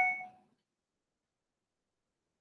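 A ringing tone made of several steady pitches at once, chime-like, already sounding at the start and dying away within about half a second, followed by silence.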